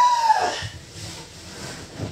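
A woman's short wordless vocal sound, one drawn-out note that rises and then falls in pitch, lasting about half a second. Faint soft knocks and rustling follow.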